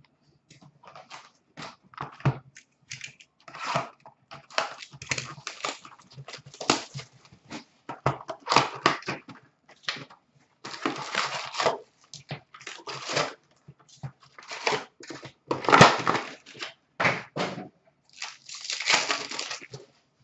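Trading card pack wrappers being torn open and crinkled, with cards shuffled in the hands: a run of irregular rustling and tearing noises with short pauses between them.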